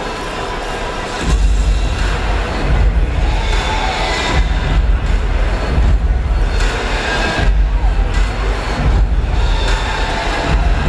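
Music with heavy bass played over an arena's public-address system, coming in suddenly about a second in, over a crowd's noise and cheering in a large reverberant arena.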